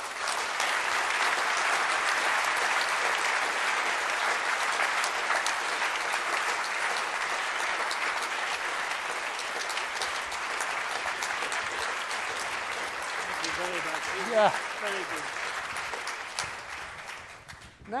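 An audience applauding, one long, even burst of clapping that dies away near the end. A man says "yeah" over it near the end.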